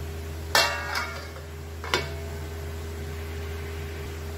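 A steel plate set down as a lid on a metal kadai of gravy: one sharp metallic clank about half a second in that rings briefly, then a lighter clink near two seconds in. A steady low hum runs underneath.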